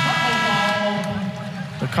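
Basketball arena horn sounding one long steady tone. It is strongest for about a second, then fades.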